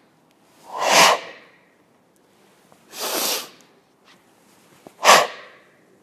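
Forceful, audible breathing timed to the chishi movements of a Goju Ryu exercise: three loud, noisy breaths about two seconds apart, the last one short and sharp.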